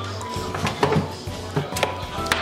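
Background music with sustained tones, with a few short knocks.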